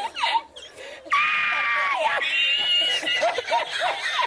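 A man laughing uncontrollably in high-pitched squealing wheezes: two long held squeals of about a second each, then short choppy bursts of laughter near the end.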